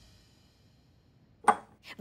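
Background music dying away to near silence, then two short sharp hits about a second and a half in, the first loud and the second softer.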